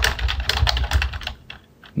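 Typing on a computer keyboard: a rapid run of keystrokes that stops about a second and a half in.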